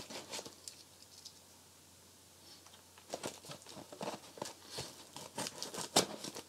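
A mailed package being opened by hand: scattered short tearing, scraping and rustling sounds, sparse at first and busier in the second half.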